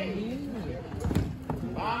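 Men's voices shouting, with a few sharp thuds of a football being kicked about a second in.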